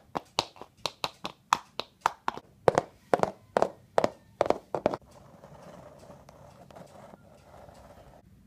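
Plastic Schleich toy horse hooves tapped on a wooden surface in a walking rhythm, about four taps a second, stopping about five seconds in.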